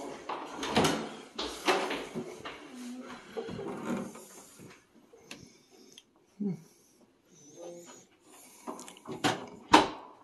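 A door being opened and passed through, with knocks and clatter in the first few seconds, then quieter handling noise, and a single sharp knock near the end.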